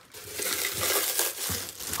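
Plastic wrap crinkling and crackling as the ice cream maker's plastic-wrapped aluminum freezer bowl is handled.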